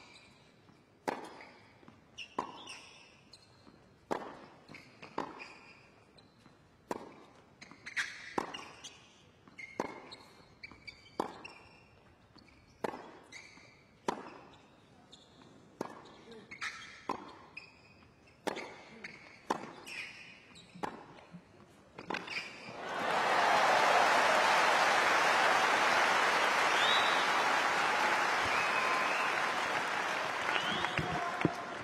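Tennis rally on a hard court: the ball struck back and forth with a sharp pop about once a second. About 22 seconds in the rally ends and a stadium crowd breaks into loud applause and cheering for the won point.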